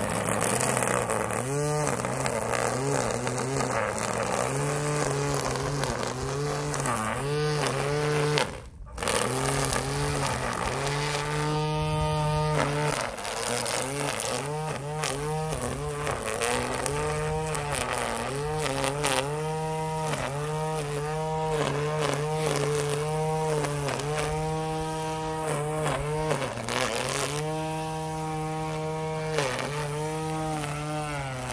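Battery-powered string trimmer running, its electric motor and spinning line whining steadily as it cuts grass along the edge. The pitch speeds up and slows down over and over, and the sound stops briefly about nine seconds in before picking up again.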